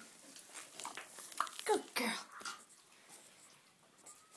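A few short animal whines falling in pitch, clustered around the middle, among snuffling and rustling close to the microphone.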